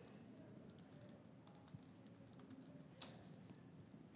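Faint typing on a computer keyboard: a run of irregular key clicks as text is entered.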